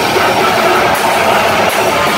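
Hardcore metal band playing live at full volume. Distorted electric guitar and drum kit blur into one dense, saturated wall of sound, with cymbal hits about a second in and near the end.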